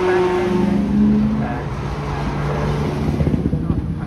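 McLaren twin-turbo V8 supercar driving past, its engine note rising briefly and then dropping in pitch about a second and a half in as it goes by. Low wind buffeting on the microphone comes in near the end.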